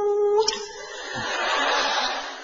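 A telephone ringing tone heard on the line: a steady beep that cuts off about half a second in. It is followed by a swell of rushing noise that rises and then fades.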